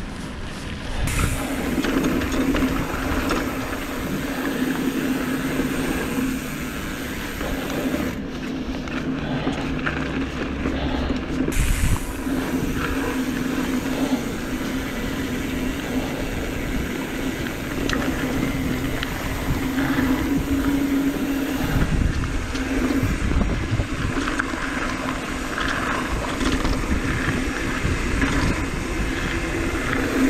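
Mountain bike riding along a dirt singletrack trail: a steady rushing of tyres on dirt and the bike's rattle, with scattered knocks as it runs over bumps, the loudest about twelve seconds in.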